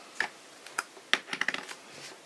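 A handful of light clicks and taps, most of them in the second half, as hands handle a paper mini journal and pick up a plastic glue bottle on a cutting mat.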